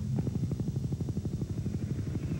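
Helicopter in flight, its rotor blades beating in a fast, even chop.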